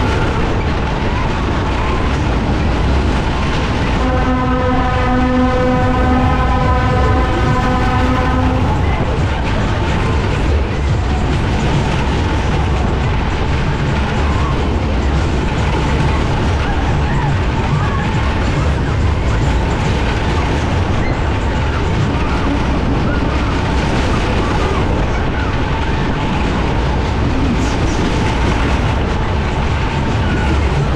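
Matterhorn fairground ride running at speed, its cars going round the undulating track with a loud, steady rushing and rumbling noise. About four seconds in, a steady horn tone sounds for roughly five seconds.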